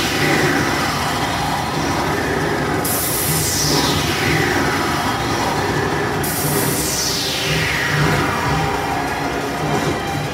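Stage-show sound effects played over a PA system: noisy sweeps that fall steadily in pitch, a new one starting about three seconds in and again about six seconds in, over backing music.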